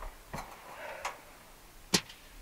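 Three short sharp knocks or clicks, the last near the end the loudest.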